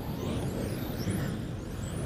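Several electric RC touring cars on the track, their motors giving high-pitched whines that rise and fall, overlapping, as the cars speed up and slow down.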